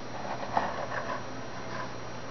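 Faint handling noise: a few soft rustles and light taps over a steady low hum.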